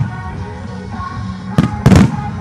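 Fireworks going off with sharp bangs over music playing for a fireworks-to-music show: one bang right at the start, then two more close together about a second and a half in.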